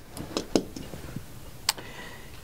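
A few light clicks and taps of hand handling: a roll of tape set down on a tabletop and a baton turned in the hands. There are three short sharp ticks, two close together early and one about three quarters of the way through.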